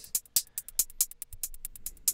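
Two layered programmed trap hi-hat patterns playing back from a DAW: a sharp hi-hat and a pitched-up 'quartz' hi-hat with randomized panning and velocity, quick crisp ticks about ten a second.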